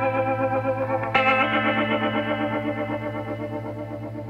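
Background music: sustained chords that slowly fade, with a new chord striking about a second in.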